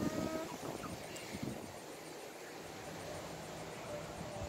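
Faint outdoor ambience with a few soft, short calls from hens in the first second or so, then only a low steady background hush.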